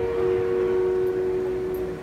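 Grand piano with two notes held and slowly ringing out, over the low noise of an arena crowd.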